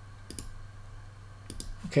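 Computer mouse clicking: a couple of light clicks about a third of a second in, then a few more near the end, as a menu in the editor's sidebar is opened.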